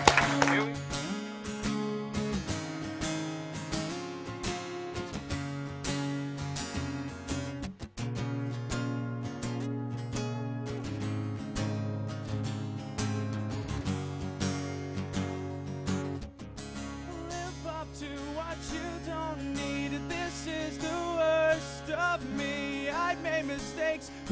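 Two acoustic guitars strummed together, playing a song's introduction. In the second half a man's voice joins with wavering, wordless singing.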